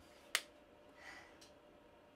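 A single sharp click about a third of a second in, over faint room noise.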